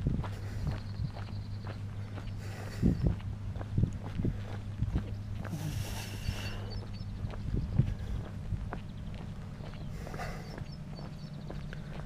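Footsteps walking on a dirt and gravel road, irregular crunching steps over a steady low hum, with a few short high chirps now and then.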